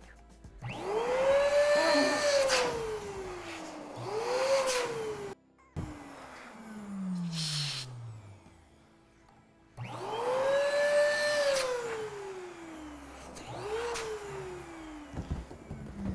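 Electric balloon inflator switched on in repeated bursts to blow up latex balloons: each time its motor whine climbs quickly, then slides down in pitch as the motor spins down after switching off. There are two longer bursts, about a second in and about ten seconds in, and two shorter ones.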